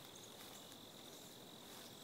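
Crickets trilling faintly in one steady, unbroken high note.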